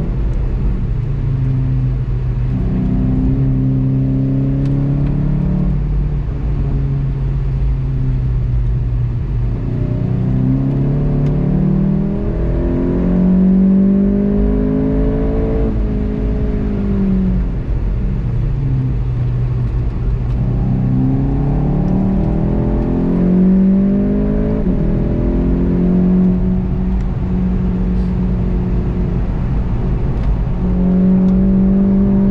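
VW Golf 7.5 GTI TCR's turbocharged 2.0-litre four-cylinder engine under hard acceleration, heard from inside the cabin, with steady road and tyre rumble beneath. Its pitch climbs through the gears, drops sharply about halfway through, then climbs again.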